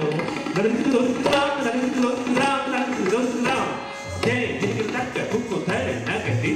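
Live Hindustani classical accompaniment for Kathak: tabla playing under a held, repeating melodic line.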